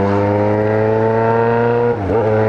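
Yamaha XJ6 motorcycle's inline-four engine pulling in gear, its pitch rising steadily as it accelerates, with a brief drop right at the end as the throttle eases.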